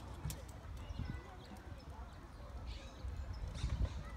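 Outdoor ambience: a low rumble of wind on the phone's microphone, with faint distant voices and a few heavier buffets near the end.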